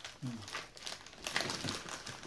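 Packaging wrapper crinkling in irregular bursts as a packet of shortbread biscuits is opened by hand.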